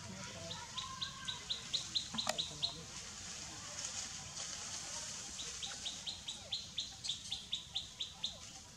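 A bird calling in two runs of short, high, repeated notes, about four or five a second, each run growing louder, over a steady high hiss. There is a single sharp click about two seconds in.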